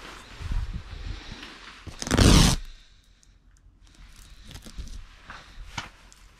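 Rustling and handling noise from someone moving about, with one loud scraping rustle about two seconds in, then scattered small clicks and taps.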